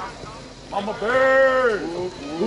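A person's loud, drawn-out shout, held for about a second and starting just under a second in.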